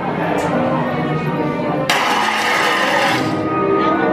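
Eerie music from the haunted attraction's sound system, with a sudden loud hissing whoosh about two seconds in that lasts over a second, as the animated ghost portrait changes.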